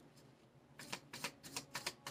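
A deck of tarot cards being shuffled by hand, with a quick run of soft card slaps starting about a second in.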